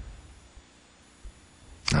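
Quiet room tone with a faint low hum during a pause in the conversation, then a man's voice starts near the end.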